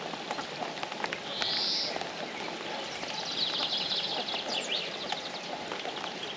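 Rain falling steadily, with scattered drop ticks close by. A bird sings over it: a short buzzy note about one and a half seconds in, then a run of quick high notes from about three to five seconds in.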